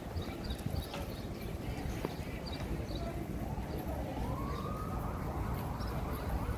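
Busy city street ambience with a steady low rumble of traffic. About halfway through, a siren wail rises and falls once.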